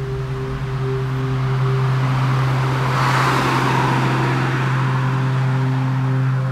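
A car passing by on a road, its noise swelling to a peak about halfway through and then fading, over a low, steady droning tone from the film score.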